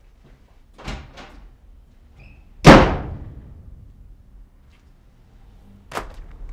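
A door slammed shut: one loud bang about two and a half seconds in that dies away over about a second, after a couple of softer knocks about a second in.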